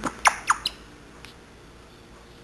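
African grey parrot making two quick squeaky chirps, each sliding sharply down in pitch, followed by a short click.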